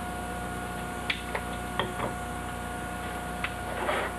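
Steady electrical hum with a thin high tone, with a handful of faint, short clicks and taps as small objects are handled on a table.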